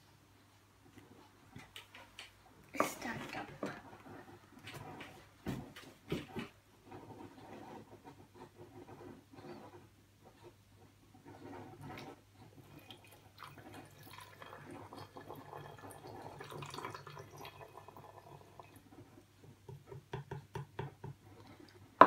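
Liquid food colouring poured from a small plastic cup into the bottle inside a papier-mâché volcano model, trickling softly, with a few light knocks of the cup against it about three and six seconds in.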